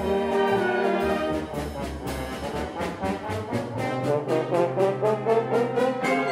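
Concert band playing, brass to the fore, with held chords over a low bass line. In the second half the music turns to a quick, steady run of short accented notes.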